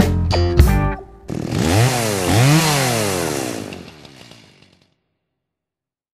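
The band's closing chords ring out for about the first second. Then a chainsaw engine revs up twice and runs down, fading out about five seconds in.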